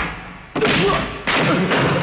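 Dubbed punch sound effects in a film fight, two heavy hits: one about half a second in and a second a little past one second, each dying away quickly.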